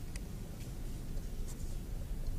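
Steady low rumble of a large hall's room tone, with a few faint, brief clicks.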